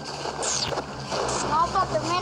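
A child's high voice speaking in the last half second, over a steady background hiss and low hum.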